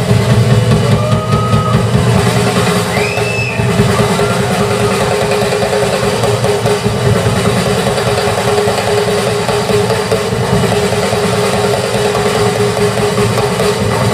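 Live rock band playing at full volume, with the drum kit to the fore. A couple of short, high, whistle-like glides rise over the music about one and three seconds in.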